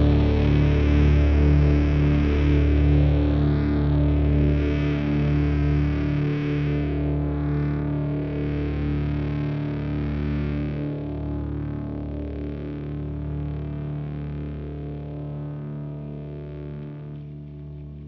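Instrumental heavy psych stoner rock: distorted, effects-laden electric guitar over a deep low note, holding sustained tones while the whole sound slowly fades out at the end of a track.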